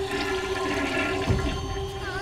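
Horror film sound design: a steady low drone under a rushing noise, with a single low thud a little past halfway.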